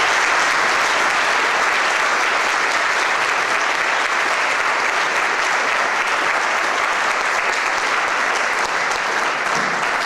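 An audience applauding steadily in a large hall.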